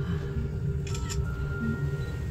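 Soft background music with long held notes, played through a ropeway gondola's speakers, over the steady low rumble of the cabin riding the cable. A brief rustle about a second in.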